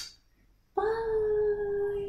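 A short hiss right at the start, then a woman's voice holding one long, slightly falling sung note from about a second in, a drawn-out playful goodbye.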